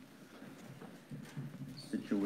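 A few faint knocks and handling sounds at the pulpit microphone, as a book or papers are handled, in an otherwise quiet pause.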